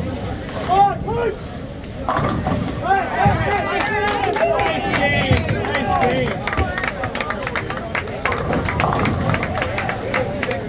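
Several voices calling and squealing over one another in short rising-and-falling cries, with a run of sharp clicks in the second half.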